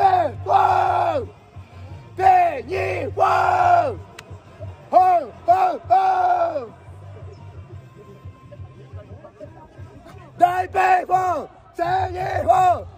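A man shouting a baseball cheer chant in short groups of loud, falling-pitched syllables, with crowd noise and music beneath. The shouting pauses for a few seconds past the middle and starts again near the end.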